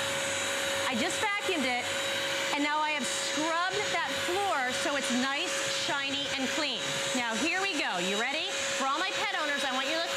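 Bissell CrossWave wet/dry vacuum running steadily with an even whine as it vacuums and scrubs a wet spill off a hard floor.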